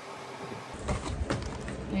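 Handling noise: faint steady hiss, then from about a second in a run of soft knocks and rustles as the camera is grabbed and moved.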